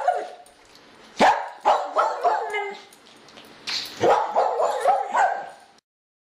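A dog barking and yipping in two runs of quick barks, one starting about a second in and the other a little before four seconds, cutting off suddenly near the end.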